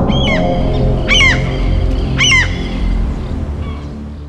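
Closing ident music for a TV channel: a low electronic bed with three short, bright tones that rise and fall in pitch, about a second apart, fading out near the end.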